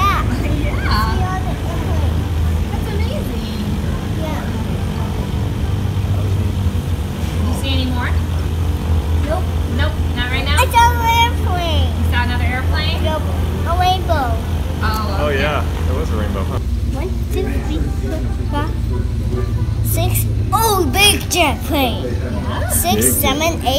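A steady low rumble of aircraft engines at an airport, easing slightly about two-thirds of the way through. A young child's high-pitched voice calls out now and then over it, most excitedly about halfway through and near the end.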